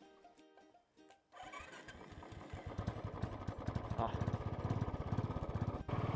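Royal Enfield Bullet 350 single-cylinder engine starting on the electric starter about a second in, then running, its firing beats getting faster and louder.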